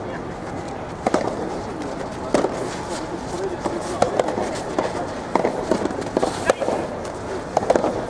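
A soft tennis rally: a soft rubber ball struck back and forth by rackets and bouncing on the court, as a series of sharp pops about a second or so apart. Voices can be heard over it.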